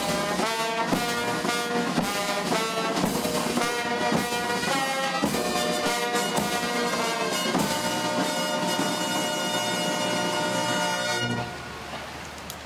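Brass band playing, the notes changing about every half second to a second, then a long held final chord for several seconds that stops abruptly about a second before the end.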